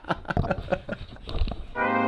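A man's chuckling trails off, then near the end a held brass chord of music comes in loudly and sustains.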